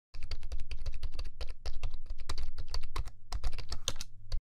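Rapid typing on a keyboard, a fast, uneven run of sharp clicks over a low steady hum.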